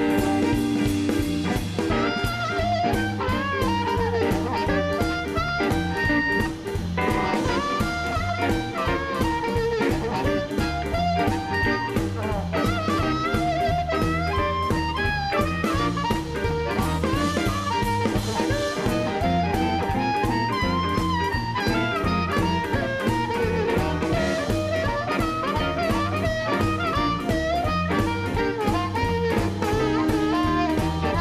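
Live electric blues band playing: harmonica played into a microphone, with bent, sliding notes, over two electric guitars and a drum kit keeping a steady beat.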